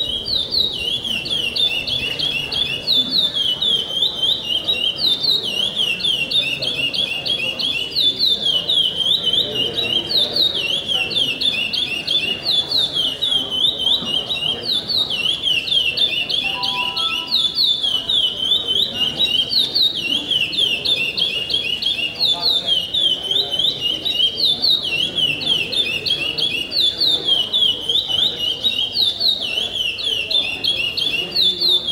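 Caged songbird singing its 'pardo pico-pico' competition song: a fast, high-pitched run of chirps repeated over and over with barely a break.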